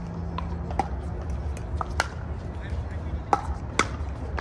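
Pickleball paddles hitting the plastic ball: about six sharp pops at uneven spacing, the loudest in the second half, over a steady low rumble.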